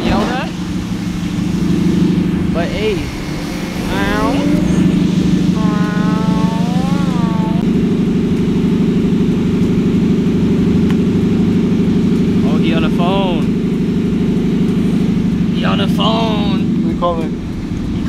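A car engine running steadily close by, a constant low drone that grows louder about halfway through, with people's voices and calls breaking in over it.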